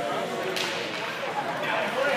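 A single sharp crack of a hockey stick striking the puck about half a second in, over spectators talking in the rink.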